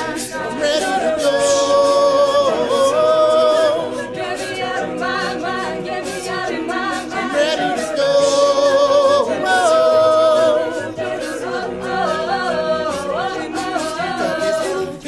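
A mixed a cappella vocal group of men's and women's voices singing in harmony with no instruments. Twice the voices hold long chords and swell louder, with shorter moving lines in between.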